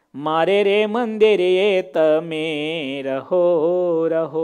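A man's solo voice slowly chanting a devotional prayer, holding long melodic notes in phrases with brief breaths between them.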